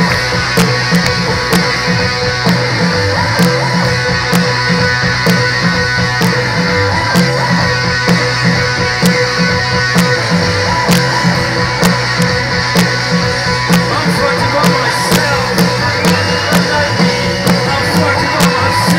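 Live rock band playing an instrumental passage: electric guitar over bass and a steady drum beat, heard loud through a festival PA from the audience.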